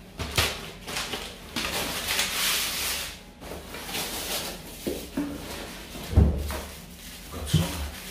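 Handling noises from plastic food packaging: rustling for a second or two, then scattered knocks, with a heavy thump about six seconds in.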